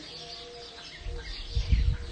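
Birds calling in the background, faint thin steady notes in the first second, with a low rumble on the phone's microphone near the end.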